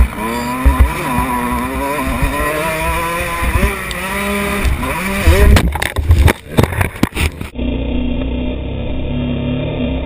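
Dirt bike engine revving, its pitch rising and falling, heard close from the bike itself; about five and a half seconds in a run of loud knocks and thuds breaks in as the bike crashes. About seven and a half seconds in the sound changes suddenly to a duller, steadier engine note.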